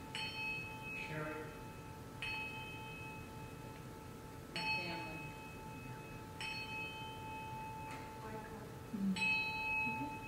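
Small brass hand bell struck with a wooden striker, five single dings spaced about two seconds apart, each ringing out clearly and fading. It is rung once as each name is called out, to bring that person into the prayer circle.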